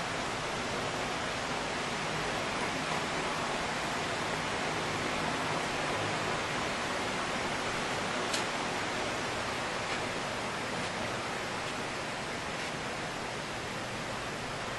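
Steady, even hiss of recording background noise with no speech, and a faint click about eight seconds in.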